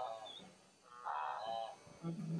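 Pitched animal calls, each a pair of falling notes, repeating with short gaps; one call trails off at the start and another comes about a second in. A brief high chirp comes near the start.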